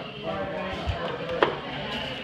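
Faint background voices, with a dull low thump about a second in and a single sharp knock about one and a half seconds in.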